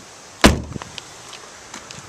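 A 2011 Chevrolet Traverse's front passenger door slammed shut once, about half a second in: a single sharp thud that dies away quickly.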